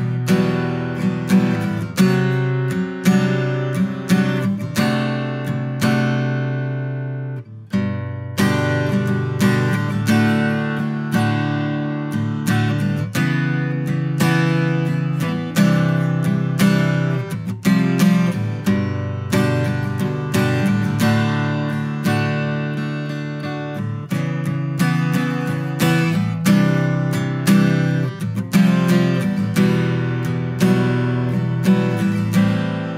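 Martin Custom OM-28 acoustic guitar, Adirondack spruce top with ziricote back and sides, played solo with strummed chords that ring on between strokes. The playing breaks off briefly about seven and a half seconds in, then resumes.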